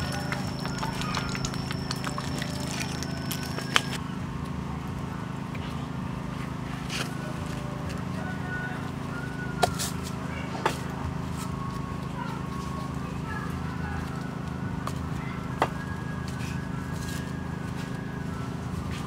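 Pot of soup at a rolling boil over a wood fire: a steady low bubbling, with a few sharp clicks and faint short chirps. A high steady whine stops about four seconds in.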